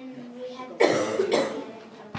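A person coughing: two sudden, loud coughs about a second in, close together.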